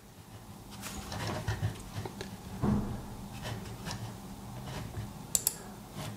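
Faint, scattered clicks and light handling knocks from a Logitech M705 wireless mouse being moved and clicked to work a phone, with a sharper click near the end, over a faint steady hum.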